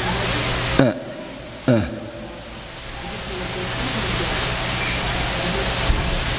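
Steady recording hiss with a low hum. About a second in it drops out suddenly, with two short downward-sweeping glitches less than a second apart, then the hiss slowly builds back up.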